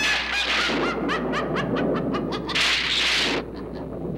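Eerie horror-film sound effects: a quick string of short, high, rising squawk-like cries over a hiss for about two and a half seconds, then two longer bursts of hiss.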